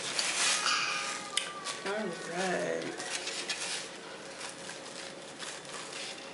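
Pizza slices being handled in open cardboard delivery boxes: rustling in the first second and a sharp click about a second and a half in. A short hummed voice sound, rising and falling, follows about two seconds in.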